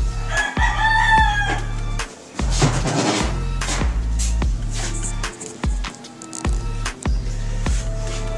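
A rooster crows once, about half a second in, a single call lasting just over a second, over steady background music.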